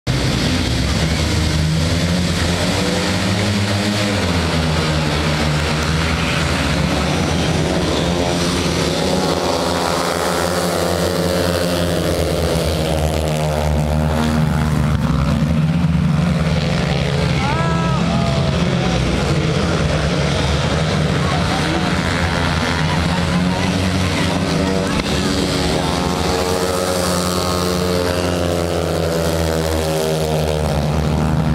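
Several 500cc single-cylinder speedway motorcycles racing together, their engines running loud and hard with the pitch rising and falling continuously; one bike's engine note sweeps up and back down clearly about eighteen seconds in.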